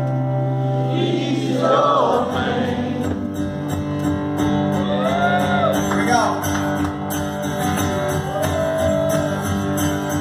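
Live performance of a male singer with guitar: a sung melody holding and bending long notes over sustained guitar chords, heard from among the audience.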